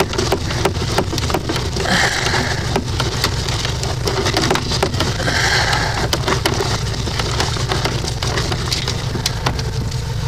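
Rapid, irregular crackling and clicking as a sewer camera's push cable is pulled back out through the drain pipe to the cleanout, over the steady low hum of a running engine.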